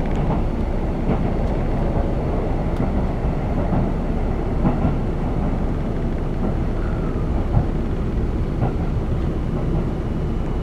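Steady running rumble of a train heard from inside a passenger car, with a few light knocks through the rumble.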